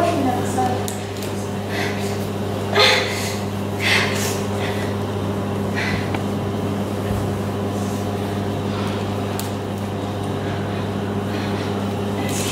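A steady low electrical hum, with a few short, sharp vocal breaths from the performer about three, four and six seconds in.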